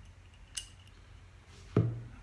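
One light metallic click about half a second in, from small paintball-marker parts being handled during reassembly, over quiet room tone.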